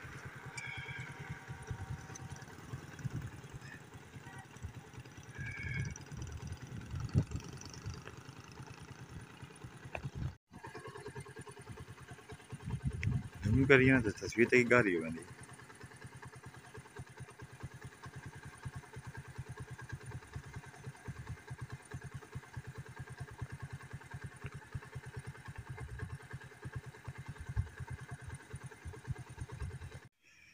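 A small engine running steadily with a fast low throb. A loud voice-like call rises over it for about two seconds, a little after the middle.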